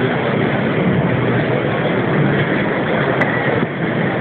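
A large indoor crowd cheering and shouting at once, a dense, steady din of many voices with no single voice standing out.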